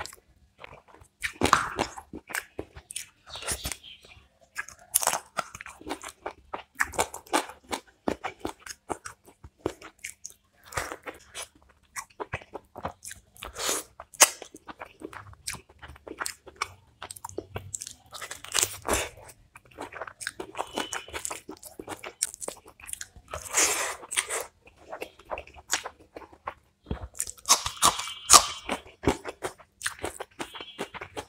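Close-miked eating sounds of a meal of chicken roast, mutton curry and rice eaten by hand: wet chewing and crunching with many small clicks, and louder bursts of crunching every few seconds.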